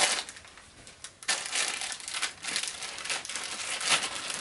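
Clear plastic treat bag crinkling as it is handled and opened by hand, with a short quieter stretch about a second in before the crackling picks up again.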